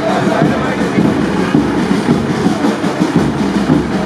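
Loud, continuous din of a street procession: crowd voices over a dense, rapid clatter, with some music.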